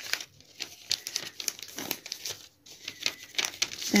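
Paper dress pattern being folded into a pleat by hand, crinkling and rustling in irregular crackles.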